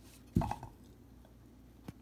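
A single sharp knock about half a second in as a painted glass bottle is set down into a ceramic mug, then a light click near the end.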